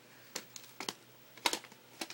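A few light clicks and taps from plastic VHS tape cases being handled, the loudest about one and a half seconds in.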